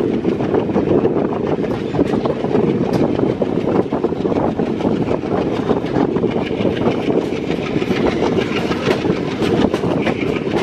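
Passenger train running at speed through a curve, heard from an open coach door: a loud, steady rumble of steel wheels on the rails, full of small rapid clicks. A higher hiss joins in about six seconds in.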